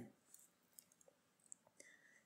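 Near silence, with a few faint small clicks scattered through it.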